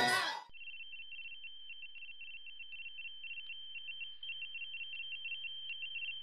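A high-pitched electronic tone that starts about half a second in and pulses rapidly and evenly, several times a second, with a fainter lower tone under it. It gets slightly louder past the middle.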